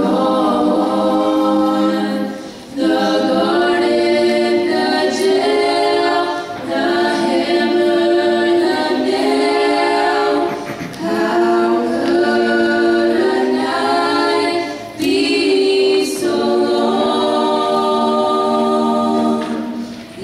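Four girls singing a cappella in harmony into handheld microphones, with no instruments, in phrases broken by short breaths about 2.5, 11 and 15 seconds in.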